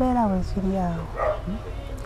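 A man weeping aloud in a few broken cries that fall in pitch, over a steady low hum.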